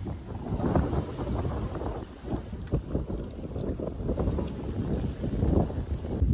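Gusty wind rumbling on the microphone, with uneven splashing as a person wades in waist-deep river water.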